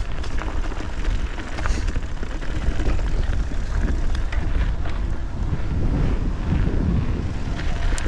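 Wind buffeting the microphone on a fast mountain-bike descent, a heavy, uneven rumble, mixed with the rolling noise of the tyres on dirt and rock. Scattered short clicks and rattles come from the 2021 Santa Cruz 5010 bike on the rough trail.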